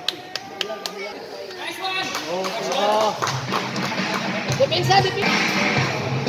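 Live sound of a basketball game on a concrete court: a few sharp taps in the first second and voices calling out. Background music with a steady beat comes in about halfway through.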